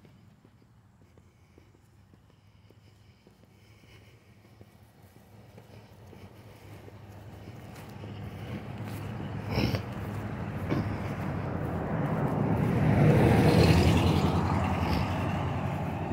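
A motor vehicle approaching on the road: its engine and tyre noise rises from near silence over several seconds, is loudest about three-quarters of the way through, then eases slightly. A single short knock comes near the middle.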